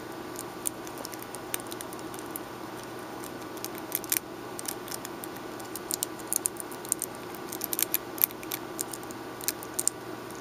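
Thin nail-art transfer foil crinkling and ticking as it is rubbed down onto a toenail with a rubber-tipped tool, in irregular light clicks that grow busier in the second half.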